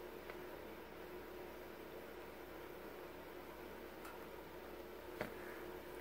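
Faint room tone with a steady hum, under the soft handling of fabric and pins as twill tape is pinned to a bodice, with a small click about five seconds in.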